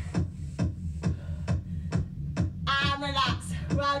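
Upbeat electronic workout music with a fast, steady beat of about four strokes a second, and a voice coming in over it briefly about three seconds in.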